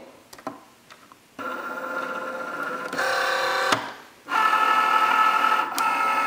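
Cricut Joy cutting machine's motor whirring as it draws the card mat in, starting about a second and a half in as a steady whine of several tones. It stops briefly a little before four seconds in, then runs on.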